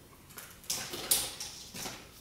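A few short rustling and clicking handling noises as hollow plastic cord-cover channels are put down and picked up.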